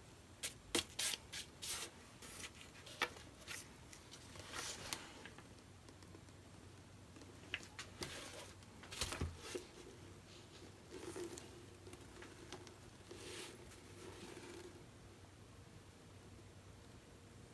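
Short clicks, taps and rustles of hands handling a spinning canvas and its plastic tub as the spin is brought to a stop, most of them in the first two seconds and again about eight to nine seconds in.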